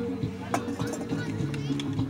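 Music playing steadily with sustained notes, with people's voices mixed in and a brief click about half a second in.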